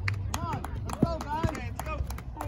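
Raised voices calling out in short bursts, with scattered sharp clicks and a steady low rumble underneath.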